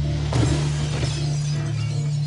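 A glass window shattering, with a dense crash of breaking glass that starts sharply and goes on for about two seconds over a steady low droning hum.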